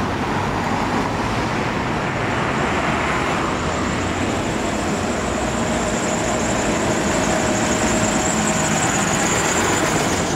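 Vintage red Routemaster double-decker bus approaching along the road and driving past close by, its engine growing louder toward the end, over seafront traffic noise. A car goes by first.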